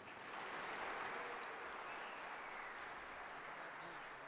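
Audience applauding, a dense steady clapping.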